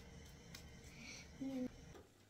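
Faint, steady low room noise, with one short hummed note from a woman's voice about one and a half seconds in.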